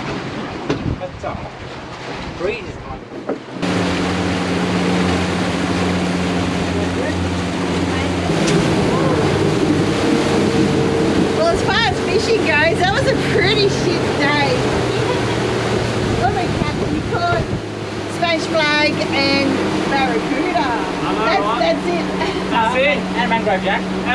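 For the first few seconds, wind and water noise with no engine. Then an outboard motor drives the boat at speed: a steady engine drone over wind and rushing water from the wake, the engine note shifting about eight seconds in.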